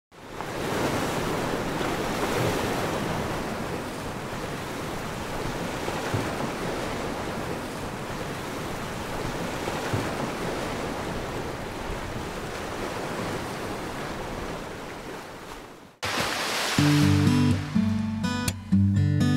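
Ocean surf breaking and washing up a beach, a steady rush that fades out about two seconds before the end. A short burst of noise follows, then strummed acoustic guitar music starts near the end.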